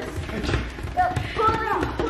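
A few low hand-drum strokes in a loose beat, with a voice calling out over them in the second half.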